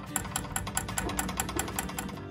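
Background music with a fast, even clicking beat, about five clicks a second.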